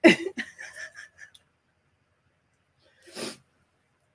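A woman laughing softly, a run of short pulses that fade out over about a second and a half, then a single short breathy sound about three seconds in, like a sniff or quick intake of breath.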